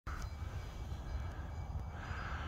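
Steady low outdoor rumble with no distinct event in it.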